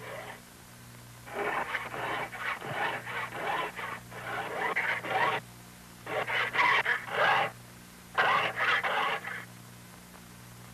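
Hand file rasping across saw teeth in quick repeated strokes: three runs of filing with short pauses between them, the teeth being sharpened. A steady low hum runs underneath.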